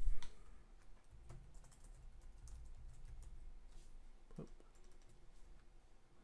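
Computer keyboard typing: a sharp click at the start, then a run of quick, light keystrokes as a name is typed into a text field.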